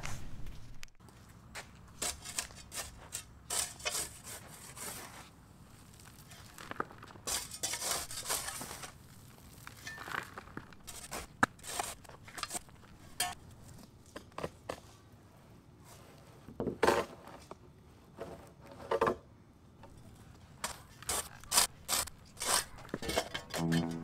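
Shovel scraping and digging into hard, sandy clay soil in irregular strokes with short pauses, stripping off the top layer of poor soil.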